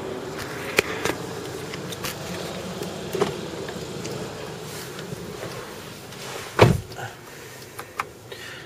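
A few light clicks and handling noises over a steady background noise as someone gets into a Hyundai Sonata, then the car door shutting with one heavy thud late on, after which the sound is quieter and closed in.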